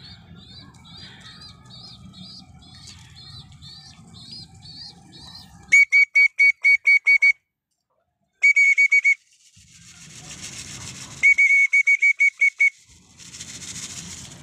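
An electronic alarm beeping in three bursts of rapid, high-pitched beeps, about five a second, starting about six seconds in. Faint rustling sounds come before it, and a short noisy burst near the end.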